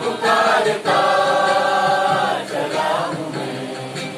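A mixed group of men and women singing a Hindi film song together in chorus, holding a long note and then sliding down in pitch near the end.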